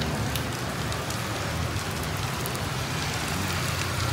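Steady heavy rain falling on the street and pavement, an even hiss with scattered drop ticks.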